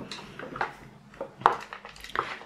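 Hands handling paper and craft supplies on a table: a few soft taps and clicks, the sharpest about one and a half seconds in.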